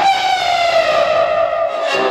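A single long held note with a stack of overtones, sliding slowly and steadily down in pitch, then fading near the end.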